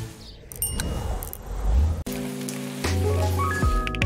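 Steady rain, then background music with held notes from about halfway through.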